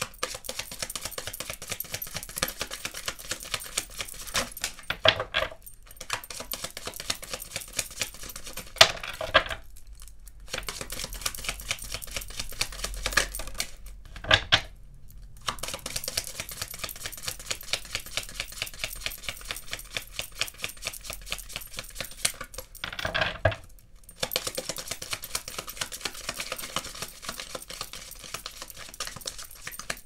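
A deck of Kipper fortune-telling cards being shuffled by hand: a long run of fast, crisp card flicks broken by a few short pauses, with a few louder slaps along the way.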